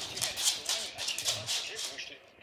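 Two Pembroke Welsh corgis playing tug-of-war with a plush toy, heard as quick scratchy, rattling scuffles of paws and toy on a hard laminate floor.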